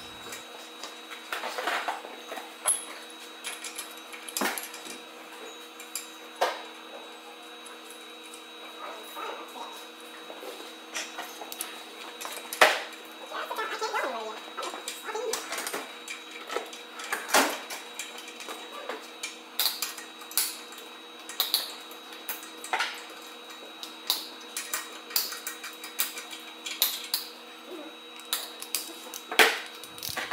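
Scattered metal clinks and taps from hand tools and bolts on the Roxor's Dana 44-type differential as the bearing caps are fitted, over a steady hum.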